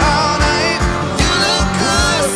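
Live country band performance: sung lead vocal with acoustic and electric guitars over a steady low beat.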